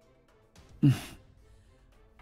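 A young man's short anguished cry about a second in, dropping in pitch and trailing off into a breathy sob, over faint background music.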